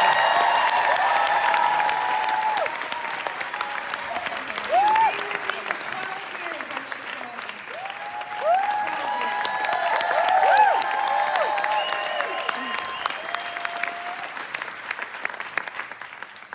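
A theatre audience, together with the cast on stage, applauding a curtain call, with high whoops and cheers rising over the clapping. The whoops are loudest in the first couple of seconds and again about eight to eleven seconds in, and the clapping thins out near the end.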